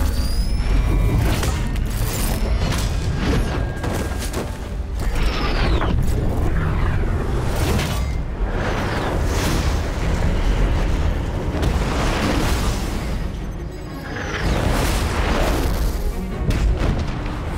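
Action-scene sound mix: film score music under repeated deep booms and impacts, with falling whooshes about five seconds in and again near the end.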